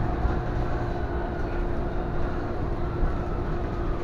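City transit bus heard from inside its passenger cabin: a steady low rumble with a constant hum and a faint whine that slowly falls in pitch.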